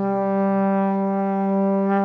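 Background music: one long held brass note, steady for about two seconds after a few short notes.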